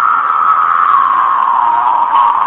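A man's long, loud, high-pitched vocal shriek, held on one note that slowly sinks in pitch.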